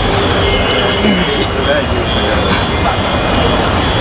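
Steady, loud street noise, a rushing sound with faint voices in the background.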